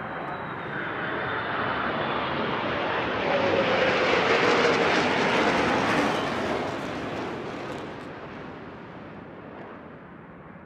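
Formation flyover of two jet aircraft: the engine roar builds to a peak about halfway through, with a pitch that drops as they pass overhead, then fades away.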